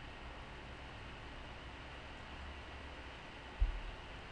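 Steady faint hiss of microphone and room noise, with one low thump about three and a half seconds in.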